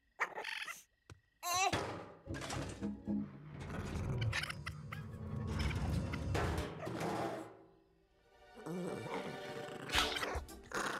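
Animated-film fight soundtrack: music with a raccoon's cries, a baby's angry yells and thuds. Two short silences fall within the first second and a half, and the sound drops almost to nothing about eight seconds in.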